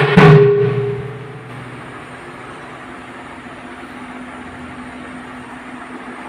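A last stroke on khol barrel drums right at the start, its ring fading over about a second, then a pause in the drumming with only a faint steady hum and room noise.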